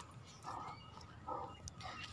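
Faint, soft sounds from a German Shepherd dog on a leash: two short noises about a second apart and a few thin high squeaks.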